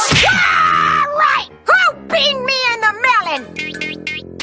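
Cartoon soundtrack: a sharp hit at the very start, then a character's high, swooping wordless vocal outbursts in several spurts over background music.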